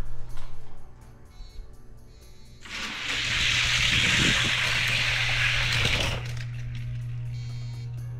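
Four die-cast Hot Wheels cars rolling down a four-lane orange plastic track, a loud rushing roll from about three seconds in that stops suddenly after about three seconds, over background music.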